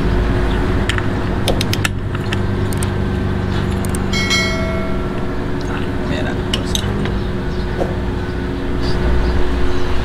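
Light metallic clinks of tools and clutch parts being handled over a steady background of engine and vehicle noise, with a brief ringing tone about four seconds in.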